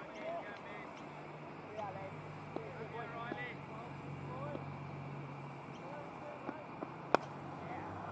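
A single sharp crack of a cricket bat hitting the ball, about seven seconds in. It is the loudest sound here, heard over faint distant voices and a low hum that fades out before it.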